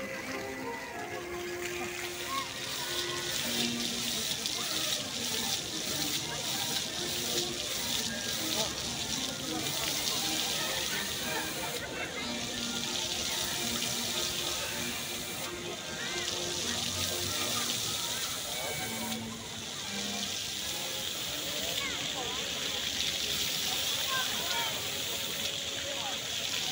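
Floor jets of a musical fountain spraying and splashing onto wet paving, a steady hiss of falling water that drops out briefly every few seconds as the jets cut off and restart. Music from the fountain's playback and crowd voices are faint underneath.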